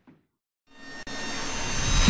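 A moment of silence, then a cinematic riser sound effect: a noisy whoosh that swells steadily louder for over a second, building toward an animated logo's impact.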